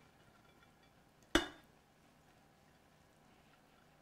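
A single sharp clink of kitchenware, with a brief ring, just over a second in, as pilaf is worked out of a skillet onto a ceramic serving platter.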